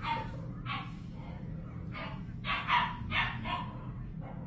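A dog barking, about six short barks in irregular succession, over a steady low rumble.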